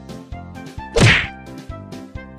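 A single loud whack about a second in, a long stick striking a person in a slapstick skit, over background music with a steady beat.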